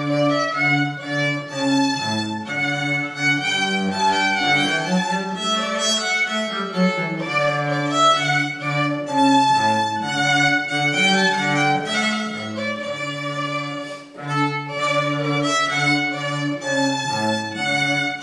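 A new Stentor violin and cello playing a duet, the cello holding low sustained notes under the violin's melody. The music eases briefly between phrases about two-thirds of the way through.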